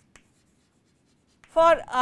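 Chalk writing on a blackboard: a few faint taps and scratches in the first half second. A man's voice starts speaking about one and a half seconds in.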